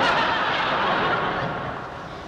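Studio audience laughing, loudest at the start and dying away over the next second and a half.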